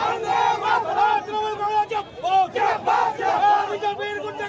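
A crowd of men shouting, many loud raised voices overlapping at once.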